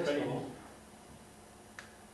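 A man's voice trailing off, then quiet room tone broken by one short, sharp click near the end.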